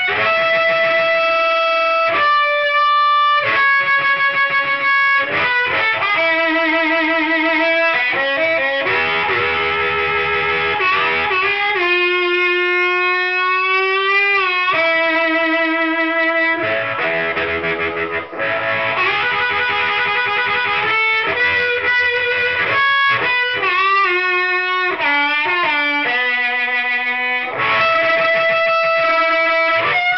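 Blues harmonica amplified through a Black Heart 15-watt class A valve amp head whose preamp valves are all 12AX7s. It plays long held notes and chords, with a slowly bent note about halfway through.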